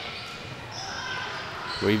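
Steady background din of an indoor volleyball gym between rallies, echoing in the large hall.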